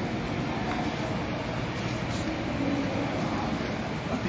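Steady rumbling background noise of a large indoor shopping mall hall, with faint distant voices now and then.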